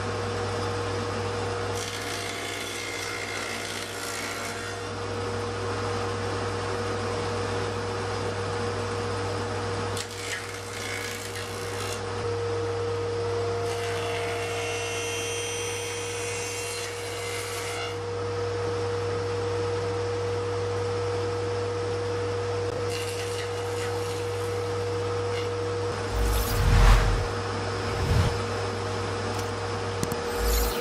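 Table saw with a 6 mm grooving blade running at a steady whine, with three stretches of cutting as a plywood board is pushed over the blade to cut a groove. Two loud thumps come near the end.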